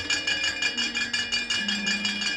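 Wayang kulit kepyak, the metal plates hung on the puppet chest, struck in a fast, even run of metallic clinks that ring on.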